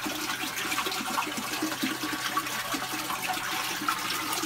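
Steady rush and splash of water falling from a small waterfall into a pool.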